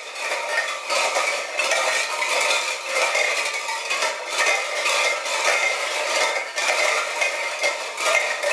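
Dozens of empty tin cans hung on strings clinking and clattering against one another in a continuous, uneven jangle, starting suddenly out of silence.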